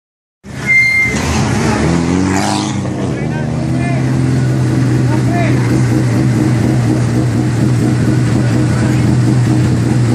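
Volkswagen rally car's engine idling steadily as the car creeps forward, with people's voices around it.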